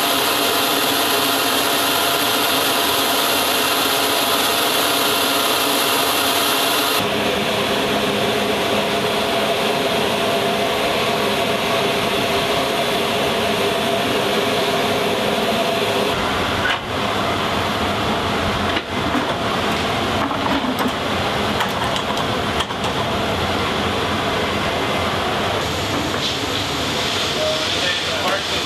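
Loud, steady turbine noise on an airfield ramp: a rushing hiss with several steady whining tones. The sound changes abruptly about seven seconds in and again around seventeen seconds.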